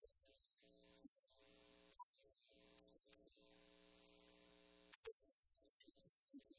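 Near silence, with a faint steady electrical hum that cuts in and out.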